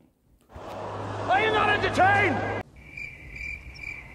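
Crickets chirping: a steady, high, pulsing trill that starts abruptly about two and a half seconds in. Before it there is a short noisy stretch with a low hum and two rising-and-falling pitched cries.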